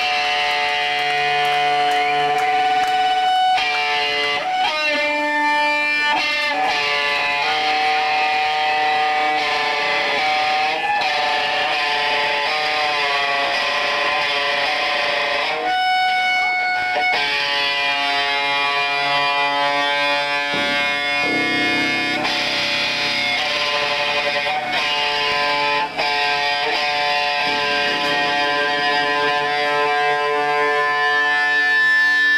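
Live rock band music led by electric guitar: held notes that bend up and down in pitch, with lower notes coming in about two-thirds of the way through.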